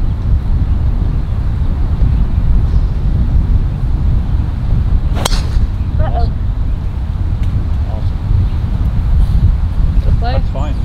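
A single sharp crack of a driver striking a golf ball off the tee, about five seconds in, over a steady low wind rumble on the microphone.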